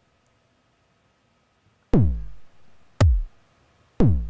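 Electronic bass drum samples auditioned one by one in a sampler app: a kick about two seconds in with a long falling pitch tail, then a shorter kick about a second later, and a third starting just as it ends.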